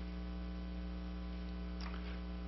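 Steady electrical mains hum: a low, even buzz with a stack of overtones, with a faint short rustle near the end.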